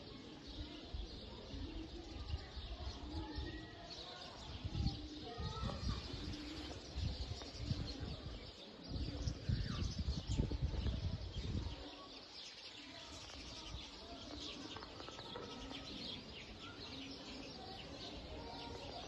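Birds chirping and pigeons cooing in the quiet open air. Gusts of wind buffet the microphone with a low rumble from about four to twelve seconds in.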